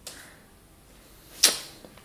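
Quiet pause in speech, broken about one and a half seconds in by one short, sharp hiss of breath from the speaker.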